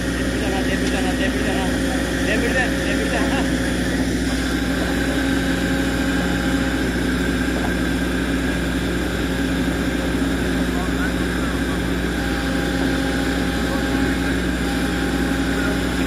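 An engine running steadily with a deep, even hum, and people talking faintly in the background.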